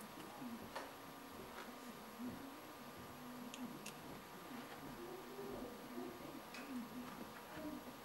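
A few faint, light clicks of small parts being handled in the fingers: a Delrin bearing block with its ball bearing and screw.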